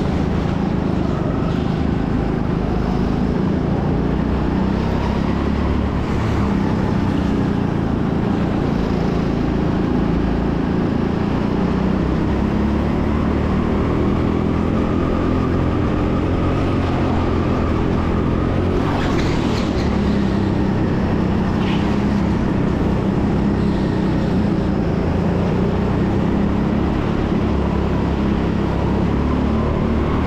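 Onboard sound of a go-kart engine running at racing speed, its pitch rising and falling as the kart accelerates out of corners and lifts into them. A few short, sharp noises are heard about two-thirds of the way through.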